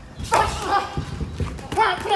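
Two short shouted calls from a man's voice, about a third of a second in and near the end, over soft scattered thuds from boxers' footwork on the ring canvas and gloved punches.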